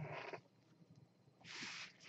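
Faint handling of trading cards in gloved hands: a short rustle at the start and a soft, brief hiss near the end as a card slides.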